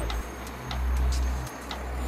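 Regular ticking, about two ticks a second, over a low rumble that swells and fades.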